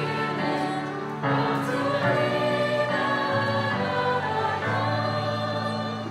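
A congregation singing a hymn together, long held notes that move to the next chord about once a second.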